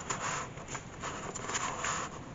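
Paper rustling and sliding as hands handle a paper tag and the pages of a handmade junk journal.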